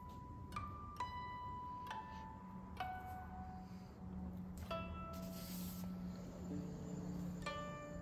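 Background music of slow, sparse plucked notes on a zither-like string instrument, each note ringing out and fading before the next, at changing pitches.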